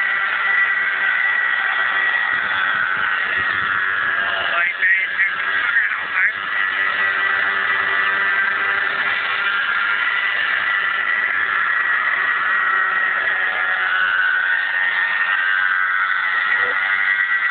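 Radio-controlled Bell 222 scale model helicopter in flight: a steady high-pitched whine from its motor and rotors, wavering briefly about five seconds in.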